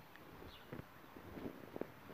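Low, quiet background with a few faint small clicks and rubbing as gloved hands work a rubber O-ring into the groove on a Rock Island VR-60 shotgun's barrel.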